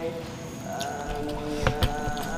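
A man humming long, drawn-out "mmm" notes with his mouth closed, holding each pitch and then sliding to the next, as an eater's sound of enjoyment. Two sharp clicks come near the end.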